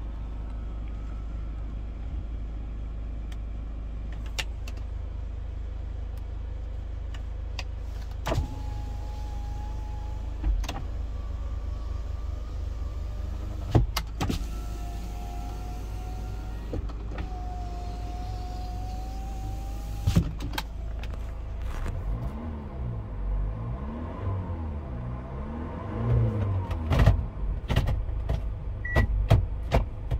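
Kia Sorento idling with a steady low hum while its power window motors whine as the windows run, twice, each run starting and stopping with a click. Near the end a sound swings up and down in pitch several times, with a few knocks.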